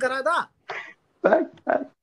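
A man's speech ends about half a second in. Three short, separate throaty voice sounds follow.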